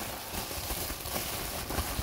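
Bubble wrap crinkling and rustling steadily as hands handle it and pull a wrapped toy out of a cardboard box.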